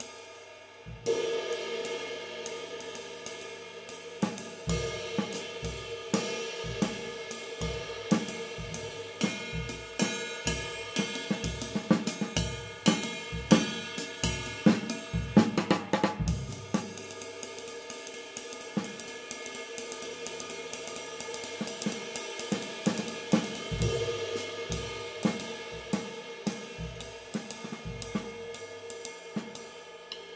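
Zildjian 22-inch K Constantinople Medium Thin High Ride cymbal played with sticks over a drum kit, its ringing wash coming in with a strong stroke about a second in, with a little higher pitch and a little more definition. Bass drum and snare accents build to the loudest hits midway, ease off, then return near the end.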